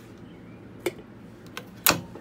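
A few sharp clicks over a faint steady hum: one click a little under a second in, faint ticks after it, and a louder click near the end.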